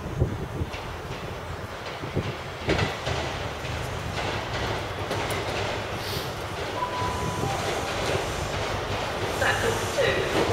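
A High Speed Train (HST) diesel power car approaching, with a steady low engine drone and rail noise that grow slowly louder as it nears. A few sharp knocks come in the first three seconds.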